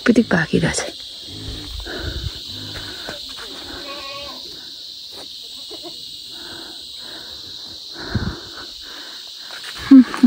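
Rustling and knocks of hands working through kiwifruit vine branches and handling the fruit, loudest in the first second and again a little after 8 s, over a steady high hiss.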